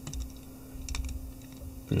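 A few light clicks and scratches from a comb being worked through the fibres of a tarpon fly's tail, freeing up tangled fibres.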